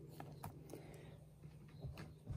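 Near silence: faint low room hum with a few light ticks from handling.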